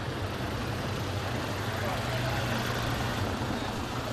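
Street traffic noise: a steady rumble of vehicle engines with a low hum underneath, and people's voices mixed in.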